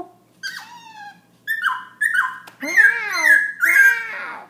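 A caged black-throated laughingthrush singing. First comes a string of short whistled notes that slide down in pitch. From about two and a half seconds in come louder arched, voice-like calls that rise and fall.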